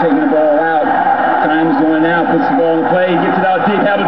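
A man's voice calling basketball play-by-play.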